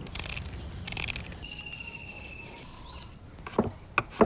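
Kitchen scissors snipping and rasping through the spiny fins of a pearl spot fish, followed by a few sharp knocks of a knife chopping garlic on a wooden cutting board near the end.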